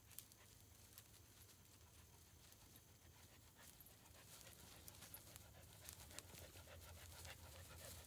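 Faint panting of a dog and light rustling of grass as she walks through it toward the microphone, growing slightly louder with small crackles near the end.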